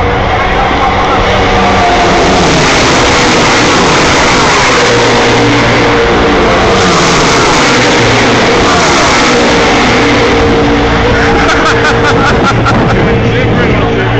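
NASCAR stock cars racing past at speed just behind the catch fence. Their V8 engines make a very loud, continuous wall of noise that eases slightly in the last few seconds.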